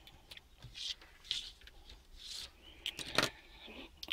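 Faint rubbing and scraping with a few light clicks as a handheld digital multimeter and its test probe leads are handled and moved on a workbench, the sharpest clicks about three seconds in.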